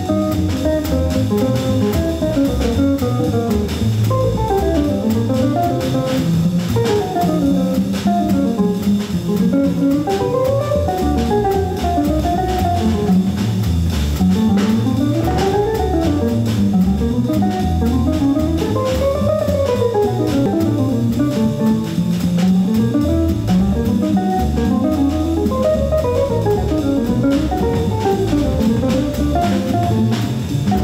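Live small-group jazz: a drum kit played with sticks keeps time on the cymbals and drums, while a melody instrument plays quick runs of notes that repeatedly climb and fall.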